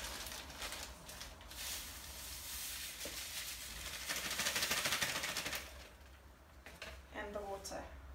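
Salt being poured into a plastic mixing bowl: a steady grainy hiss of falling grains that grows louder about four seconds in and dies away around six seconds.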